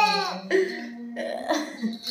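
A drawn-out vocal sound trails off, then a person coughs three short times.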